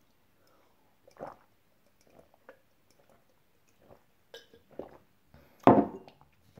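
A person drinking water from a glass: a few separate swallows and gulps, then a louder breath out near the end.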